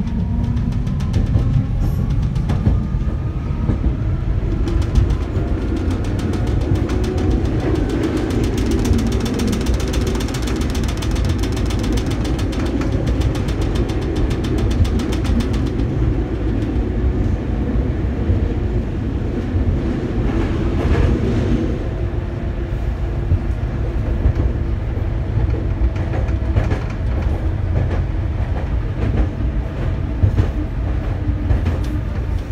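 Tram running at speed on forest track, heard from inside the vehicle: a steady rumble of wheels on rail, with a whine that rises in pitch over the first few seconds as it picks up speed. A fast fine rattle runs through the middle, and there are a few clacks over the rail.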